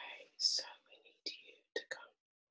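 A person whispering in short, broken bursts, heard over a video call.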